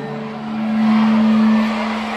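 Arena crowd noise with a single steady low note held over it for nearly two seconds.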